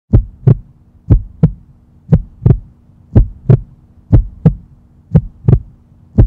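Heartbeat sound effect: six double thumps, a lub-dub about once a second, over a steady low hum.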